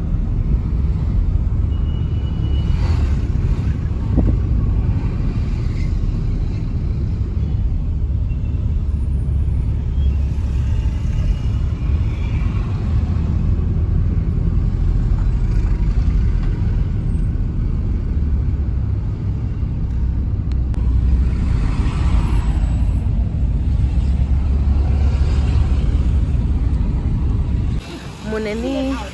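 Steady deep road-and-engine rumble of a car driving, heard from inside the cabin.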